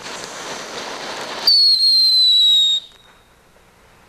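Small consumer fireworks going off: a rough hiss for about a second and a half, then a loud, shrill whistle that drops slightly in pitch and cuts off suddenly about a second later.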